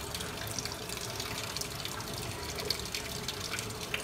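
Water running steadily in a fish-breeding tank, trickling and splashing with scattered drips. Just before the end, a hand dips into the water with a small splash.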